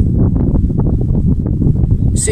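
Wind buffeting the microphone: a loud, steady low rumble with no clear tone.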